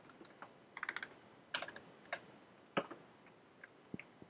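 Computer keyboard typing: irregular keystrokes, with a quick run of several keys just before one second in and single strokes after, the loudest near the end.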